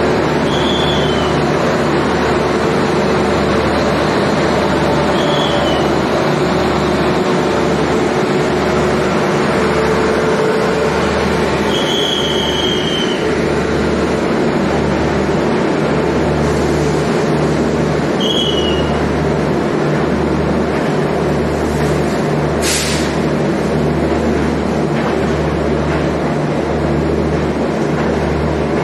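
Electric-hauled passenger train pulling out of the platform, its coaches rolling past close by: a loud, steady rumble of steel wheels on rail with a low beat about once a second. Four brief high-pitched wheel squeals come through, the longest about twelve seconds in, and there is a sharp click near the end.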